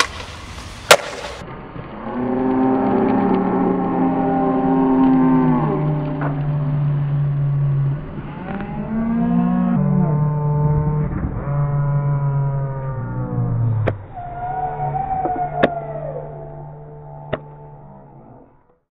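A skateboard landing with one sharp, loud slap about a second in. After that come long held notes over a steady low drone, several sliding down in pitch as they end, fading out near the end: slow droning music.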